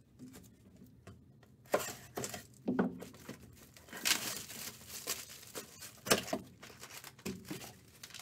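Trading-card packaging handled by hand: plastic and foil wrappers crinkling and rustling, with a few sharp handling knocks, starting about two seconds in.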